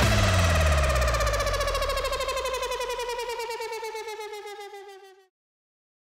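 The closing synthesizer note of the soundtrack's rap beat: a held tone with a fast pulsing, sliding slowly down in pitch and fading, under a low bass note that glides down, then cutting off about five seconds in.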